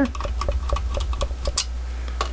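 Quick, irregular light clicks of a hand screwdriver working screws out of the sheet-metal cover of a Lortone rotary tumbler.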